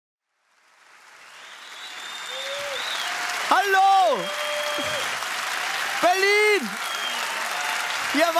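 Theatre audience applauding and cheering, fading in over the first couple of seconds, with a few loud whooping shouts rising and falling in pitch above the clapping.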